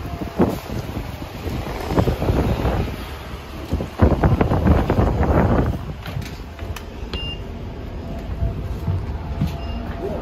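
A city transit bus's engine rumbling at a stop while someone boards, with knocks and footsteps on the steps, loudest about four to six seconds in. Short high beeps sound about seven seconds in and again near the end.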